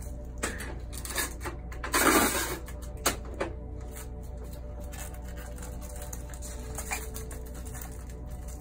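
Plastic barrier film crinkling as it is pressed and wrapped around a lamp handle, with a few sharp clicks and one louder burst of crinkling about two seconds in. After that only a low steady hum remains.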